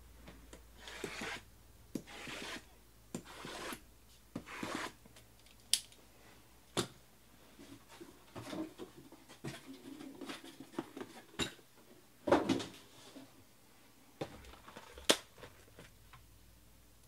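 Boxes and packaging being handled: several short scraping swishes in the first five seconds, then scattered clicks and knocks, with the loudest knock about twelve seconds in and a sharp click near the end.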